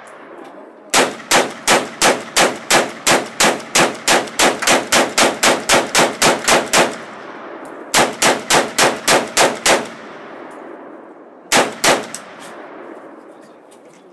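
AK-pattern rifle firing a fast string of about twenty shots at three to four a second, then a shorter run of about six, then two more, each shot trailed by a short echo.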